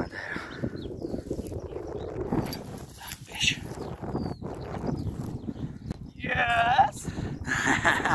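Footsteps rustling through dry grass, an irregular crackle. A voice sounds briefly near the end.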